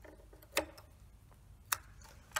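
Scissors snipping through plastic drinking straws: two sharp clicks about a second apart, with a few fainter ticks between.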